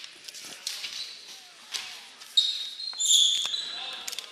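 Basketball bounced on a hardwood gym floor a few times in a large hall, with a brief high squeak about two and a half seconds in.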